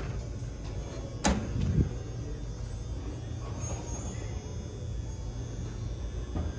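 Wooden cabinet door with a glass panel swung shut, a sharp click about a second in followed by a low thump, over a steady low background hum.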